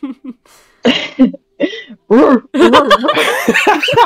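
A person imitating a dog with short barks and yips in place of words, mixed with laughter.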